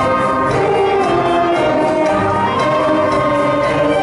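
Middle school concert band playing, brass and woodwinds together in full, held chords.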